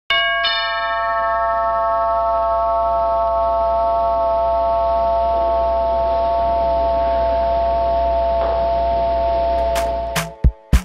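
Logo intro sting: a bell-like chime chord struck twice at the start, then held as one long steady ringing tone over a low drone, broken off near the end by sharp percussive hits.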